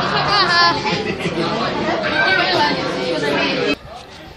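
Several voices chattering and talking over each other, breaking off shortly before the end.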